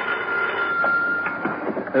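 Telephone bell ringing with a steady high ring that stops about a second and a half in. A few faint clicks follow as the receiver is picked up.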